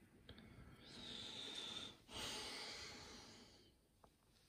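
Faint breathing close to the microphone: two soft breaths, each over a second long, the second following right after the first about two seconds in.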